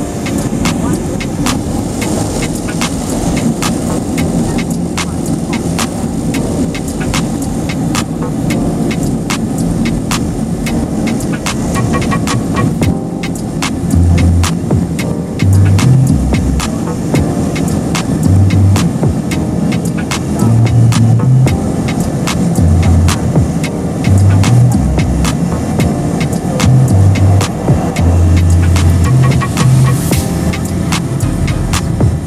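Steady engine and propeller noise inside the cabin of a small propeller plane taxiing on a runway, with many small rattles. From about halfway through, deep low thumps come and go irregularly.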